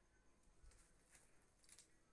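Near silence: faint background ambience with three or four very soft, brief clicks.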